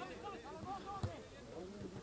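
Faint, distant shouting of players on a football pitch, with a single thump about a second in.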